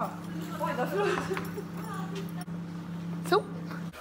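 Faint background talking over a steady low hum, with one short spoken word near the end.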